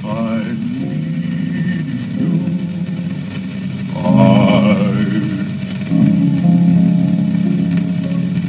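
A 1928 78 rpm shellac record of a vocal duet with piano playing an instrumental passage between sung verses, with light surface hiss. Wavering held notes rise in about half a second in and again about four seconds in, over sustained piano chords.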